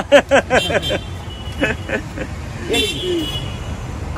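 A vehicle horn toots briefly about three seconds in, over steady street traffic, with voices in the first second.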